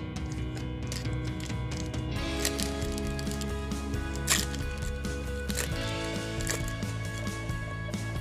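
Background music, with crinkling and tearing as a foil booster-pack wrapper is torn open by hand. The sharpest crackle comes about four seconds in.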